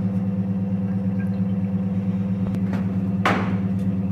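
Steady low hum of a biosafety cabinet's blower fan, with a short swish a little over three seconds in.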